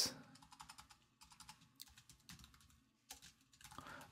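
Faint typing on a computer keyboard: a quick run of keystrokes in the first second, a few scattered ones after, and two more about three seconds in.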